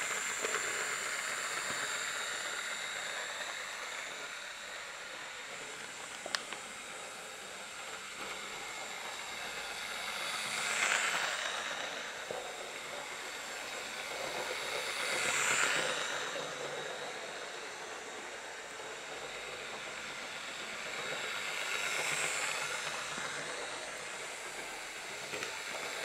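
Hornby Railroad Class 06 OO-gauge model shunter running on sectional track: a steady whirr of its small electric motor and rolling wheels. The whirr grows louder three times as the loco passes close by. There is a single click about six seconds in.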